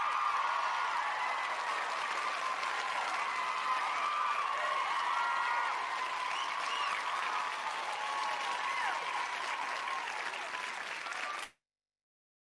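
An audience applauding steadily at the end of a lecture, the clapping cutting off suddenly shortly before the end.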